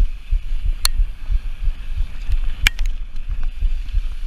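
Downhill mountain bike riding fast over a dirt and gravel trail: a constant low, uneven rumble of wind buffeting the microphone and tyres and suspension working over the ground, with two sharp clicks of gravel or the bike's parts knocking, one about a second in and a louder one past halfway.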